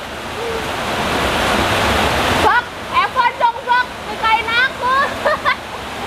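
Heavy rain falling steadily. From about halfway through, a string of short, high, rising voice-like sounds comes over it.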